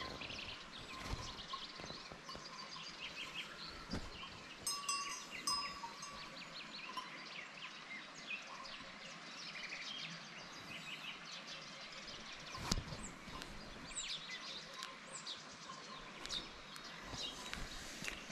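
Many small birds chirping and singing in the early morning. A couple of brief, clear bell-like rings come about five seconds in.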